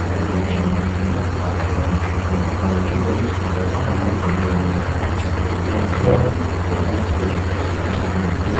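A steady low hum over constant background hiss, unchanging throughout.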